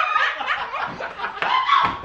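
Several people laughing together, in bursts, with no clear words.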